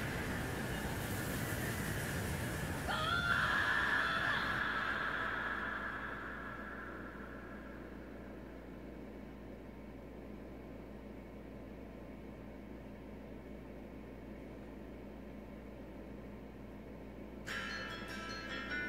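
Anime fight-scene soundtrack: a dense rushing blast of noise with a high, wavering cry about three seconds in, fading to a low hum over the next few seconds. Soft chiming music comes in near the end.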